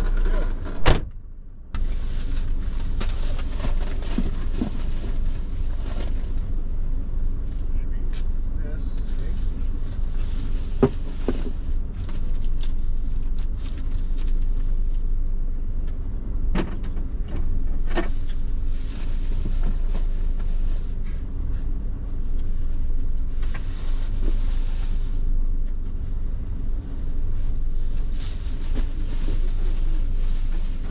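Parked car with a steady low rumble, as grocery orders are loaded into the back seat through the open rear door: a sharp click about a second in, then scattered knocks and bumps and stretches of rustling as the bags are set down.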